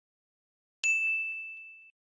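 A single bell-like ding: one clear, high ringing tone, struck about a second in and fading away over about a second.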